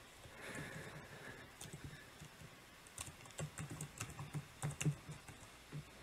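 Typing on a computer keyboard: a quick run of faint key clicks in the second half.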